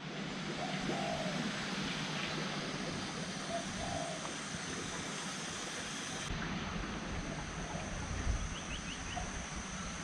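Rural outdoor ambience: a steady hiss with scattered low bird calls. A quick run of four high chirps comes near the end, and a brief low rumble just after eight seconds is the loudest moment.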